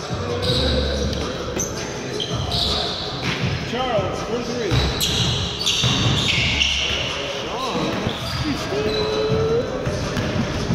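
Indoor basketball game on a hardwood court in a large gym: the ball bouncing, sneakers squeaking in short high squeals, and players' voices calling out.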